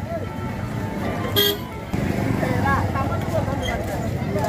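A short vehicle horn toot about a second and a half in, over a crowd's talking voices.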